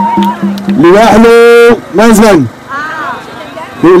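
A man shouting into a microphone through a PA loudspeaker in short phrases, drawing one syllable out into a long held note about a second in.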